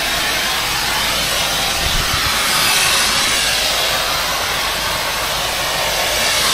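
Pressure-washer wand spraying water onto a pool deck, a steady hiss.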